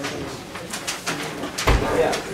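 Paper sheets rustling and being shuffled as plans are handed across a table, with a dull thump near the end.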